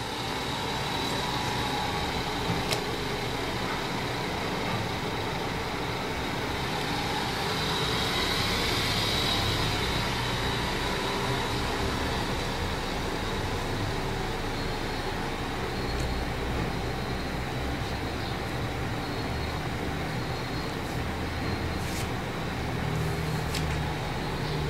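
Steady low rumble and hiss of road traffic, swelling about eight to ten seconds in.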